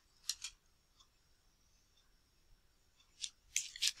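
Faint computer mouse clicks: two quick clicks shortly after the start and a few more near the end.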